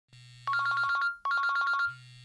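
A telephone ringing twice: two short trilling rings of about half a second each, with a faint low hum before and after them.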